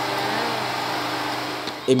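A small motor whirring steadily, with a low hum under it. It cuts off near the end as a man's voice starts.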